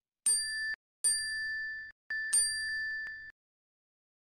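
Three bell-like ding sound effects, about a second apart. Each is a clear held tone that cuts off abruptly. The third is struck twice in quick succession.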